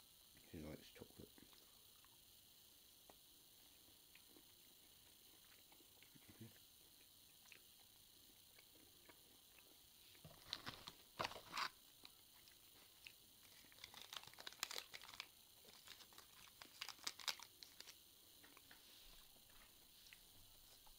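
Near silence for about the first ten seconds, then a chocolate bar's plastic wrapper crinkling in two spells of sharp crackles as it is handled, the second spell longer.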